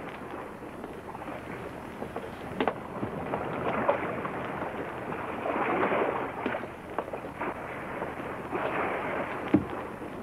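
Wind and sea waves washing around a small sailing boat: a noisy rush that swells and eases several times, with a couple of short knocks.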